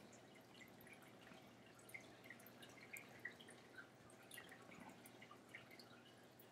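Near silence, with a few faint scattered clicks of computer keys and mouse.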